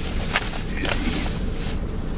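Plastic grocery bags being handled and set down on a truck's back seat: a few short crinkles and knocks over a steady low rumble.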